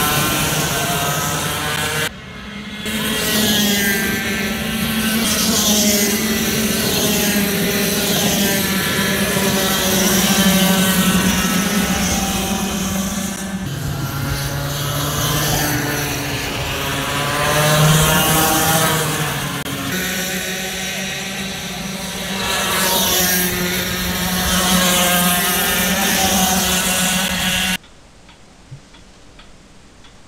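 Racing kart engines running at speed on a circuit, their pitch rising and falling as the karts pass and accelerate. The sound breaks off sharply a couple of times, and near the end it drops to a low hush.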